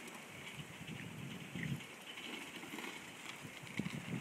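Quiet outdoor ambience with faint, scattered soft low thuds and a few small knocks near the end.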